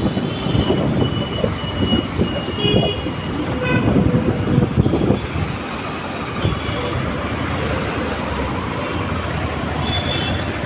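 City street traffic heard from a moving motorcycle: the engine running under gusty wind on the microphone, with several short horn toots in the first few seconds and another near the end.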